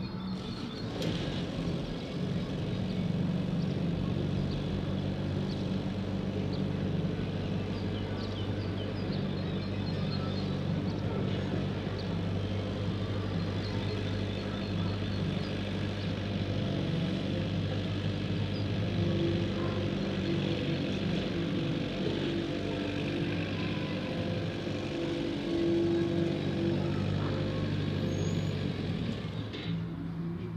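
A motor vehicle's engine idling steadily close by, a low, even hum.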